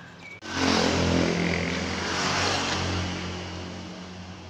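A motor vehicle engine running close by, coming in suddenly about half a second in, loudest over the next two seconds, then slowly fading.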